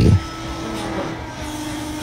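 Hydraulic press running with a steady mechanical hum as its ram comes down on a head of broccoli; the hum drops slightly in pitch partway through.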